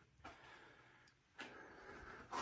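Near silence: faint room tone, with a slight rise in faint noise about one and a half seconds in.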